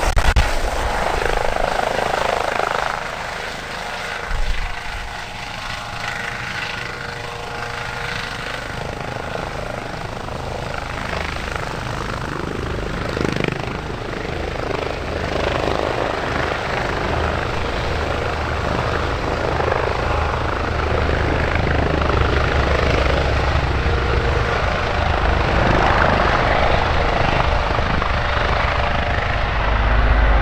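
Airbus Helicopters EC135 P2 (H135), a twin-turbine helicopter with a Fenestron tail rotor, hovering low and air-taxiing: continuous rotor and turbine noise with a steady whine. The sound drops a little about three seconds in and then builds steadily toward the end.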